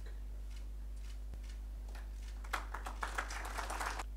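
Sparse hand claps that thicken into a patter of applause about two and a half seconds in, over a steady low electrical hum.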